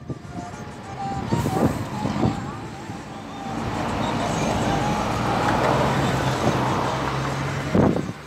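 Road and engine noise of a moving car heard from inside, growing louder and steadier about halfway through, with music and voices running underneath.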